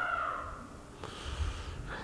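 Emerson Designer ceiling fan with a K55-style motor running on low speed, a faint steady whir of motor and blades, with a soft breath fading out over the first second.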